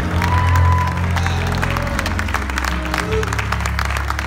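Electric keyboard holding sustained low chords while a congregation applauds, with a few voices calling out.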